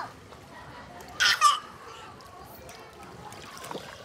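A child's brief shout about a second in, over faint background voices and water sounds.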